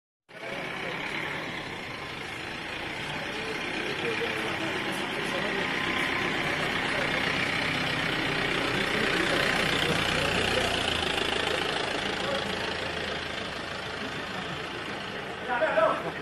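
An SUV's engine and tyres passing close by. The sound swells to a peak about ten seconds in and then fades, over the chatter of people on the street.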